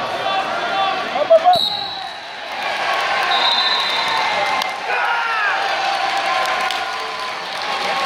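A referee's whistle blows a steady shrill note for about a second, starting about a second and a half in, and again briefly near the halfway point, with a sharp smack just before the first blast. Voices shout and call across a large, echoing arena hall throughout.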